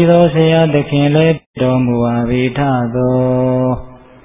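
A monk's voice chanting a Buddhist recitation in long, level-pitched notes. There is a brief break about a second and a half in, and a long held note that stops shortly before the end.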